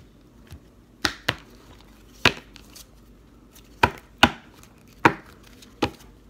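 A deck of oracle cards being shuffled by hand: about seven sharp, irregularly spaced taps.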